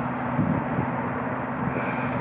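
A steady, constant-pitch low hum, like an engine idling in the background.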